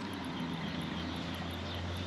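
The alternator on a Ford 4.6 2V V8, spun by hand at its pulley, its bearing giving a steady low whir. The owner hears it as squeaky and takes it as a sign that the alternator needs replacing.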